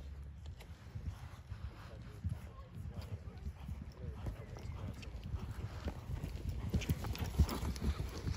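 Hoofbeats of a ridden horse on a sand arena surface: a run of dull thuds that grow louder toward the end as the horse passes close by.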